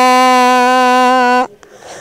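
A woman's voice holding one long, steady vowel, which cuts off abruptly about one and a half seconds in, leaving a quieter stretch.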